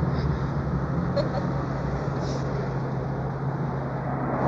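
Steady road noise from a moving open-top car: a constant low engine hum under wind rushing past.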